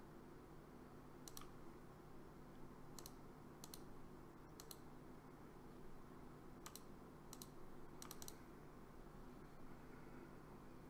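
About eight faint, sharp clicks of a computer mouse, several in quick pairs, over a low steady hum.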